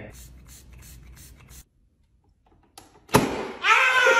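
Aerosol can of fart spray sprayed into a toy air cannon in a quick series of short hisses, about four or five a second, stopping after about a second and a half. After a gap, a single sharp snap about three seconds in, followed by a voice near the end.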